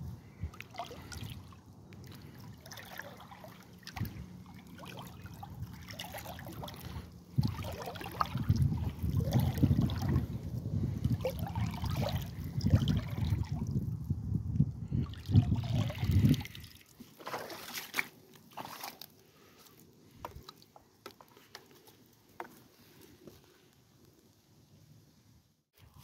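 A hand-held dip net swished back and forth through pond water, with irregular sloshing and trickling, louder through the middle and dying down to faint drips and ticks over the last several seconds.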